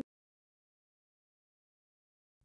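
Silence: the sound track drops out completely, with no room tone.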